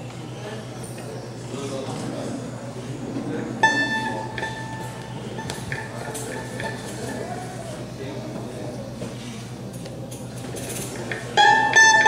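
Murmur of people talking in a room, with a single plucked string note struck about a third of the way in and left to ring out, then a fainter pluck. Near the end a choro trio of bandolim, acoustic guitar and pandeiro starts playing.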